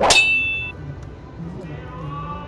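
A single sharp metallic clang that rings on with a clear high tone for under a second, then cuts off suddenly.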